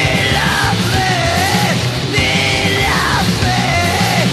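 Loud mid-1980s Japanese hardcore punk with heavy-metal leanings: distorted electric guitar, electric bass and drums, with a high yelled vocal line that holds and bends its notes.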